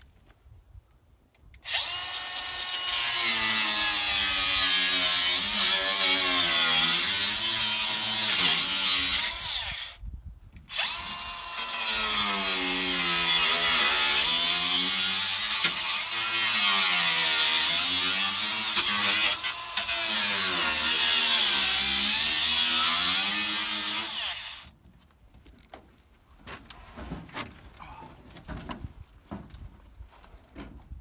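Angle (disc) grinder cutting through the rusted sheet metal of an old truck cab's dash, in two long cuts with a short pause between them. Its whine sags and recovers as the disc bites and eases off. Near the end the grinder stops, leaving only quieter knocks and clatter.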